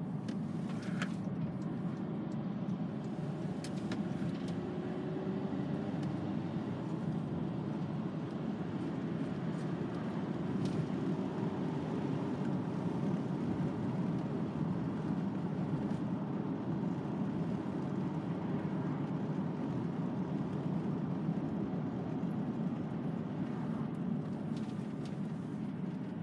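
Steady engine and tyre noise heard inside the cab of a VW T5 Transporter van on the move, with a faint whine rising slowly in pitch for several seconds as it picks up speed.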